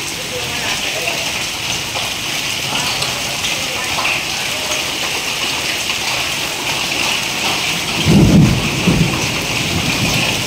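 Steady rain hissing down on a hail-covered street, with a brief low rumble about eight seconds in.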